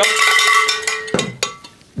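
Cowbell struck twice, a sharp clang that rings for about a second, then a weaker second hit a little past the one-second mark that fades quickly. It is rung to mark a "super nice" verdict on a bike.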